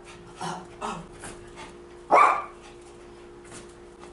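A dog barks once, loud and short, about two seconds in, with a few softer, shorter sounds from it in the first second and a half.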